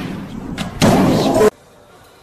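A heavy slam as the swung weight and lifter come down on the gym's wooden platform. About a second in comes a louder, distorted crash that cuts off suddenly.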